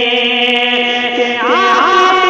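A man sings a naat (Urdu devotional poem) in a melismatic style, holding one long note. About one and a half seconds in he slides up into the next note.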